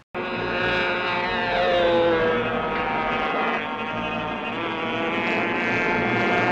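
Small engine of a model airplane buzzing as it flies past, its pitch sliding down over the first few seconds and then holding steady.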